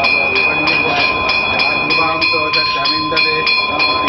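Brass puja bell rung steadily during a lamp offering, about three strikes a second with a sustained metallic ringing, over a man chanting. The ringing cuts off suddenly at the end.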